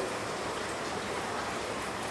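A steady, even hiss of background noise with no change in level.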